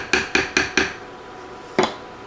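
A wooden spatula knocking and scraping against a skillet while stirring a thick pasta casserole, in quick strokes about five a second for the first second, then one sharper knock near the end.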